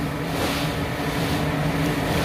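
A steady mechanical hum at a constant pitch, as from a running motor.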